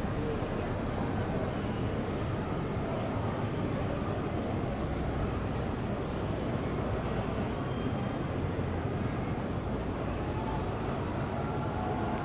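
Steady low outdoor background rumble, even in level throughout, without any distinct event standing out.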